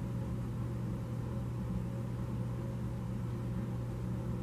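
Steady low hum with a faint even hiss underneath: background noise of the room or the recording.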